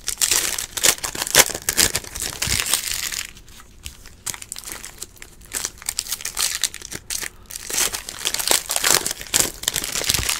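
Foil wrapper of a Panini Prizm football card pack being torn open and crinkled in the hands, in bursts of crackling: busy at first, quieter in the middle, then busy again near the end as the wrapper is crumpled.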